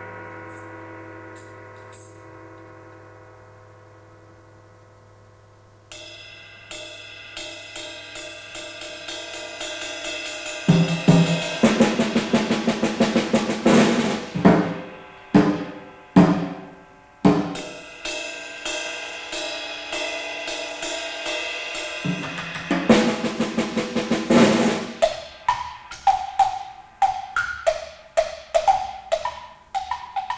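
Solo percussion performance. A long ringing note dies away over the first six seconds. Then a steady run of drum strokes and rolls builds and gets louder about eleven seconds in, with a dense loud roll around twenty-three seconds. Near the end come quick strokes at shifting pitches.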